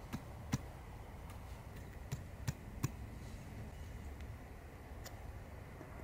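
A series of faint, sharp clicks at uneven intervals: a knife point pressing into and piercing the thin aluminium bottom of a drinks can to punch small holes.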